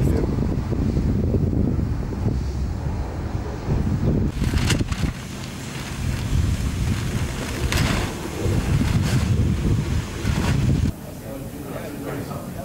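Wind buffeting the microphone as a heavy low rumble, with a few short knocks or rustles on top. The rumble drops off abruptly about five seconds in and again near eleven seconds.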